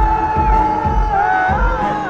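Loud pop music with a voice singing into a microphone: one long held note that wavers in pitch, over a bass beat of about two pulses a second.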